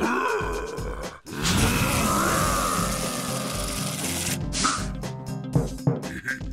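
Cartoon background music with a steady beat under animated sound effects: a character's straining grunts at the start, then a long noisy rush lasting about three seconds, and a short tonal effect near the end.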